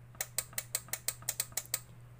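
Rapid, even mechanical clicking, about five to six clicks a second, from a homemade CRT picture-tube tester box, stopping shortly before the end, over a steady low electrical hum.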